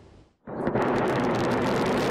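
Ballistic missile launch: about half a second in, the rocket motor ignites with a sudden loud blast of noise and a few sharp cracks, then runs on steadily and loud.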